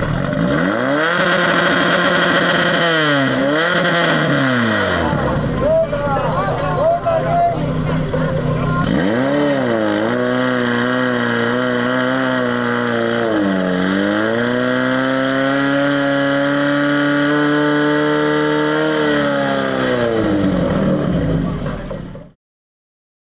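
Portable fire pump engine running hard under load while it pumps water through the charged hoses. Its pitch dips and climbs twice as the throttle is worked, holds high for several seconds, then drops near the end. Voices shout over it.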